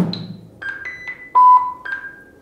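A single sharp strike of an impulse hammer with a soft tip and extra mass, tapped on a lawnmower's metal handlebar, with a brief low ring. It is followed by a quick run of about six short electronic beeps at different pitches, the loudest and lowest about a second and a half in. The beeps are the modal-analysis software's feedback as it finishes setting up its measurement parameters.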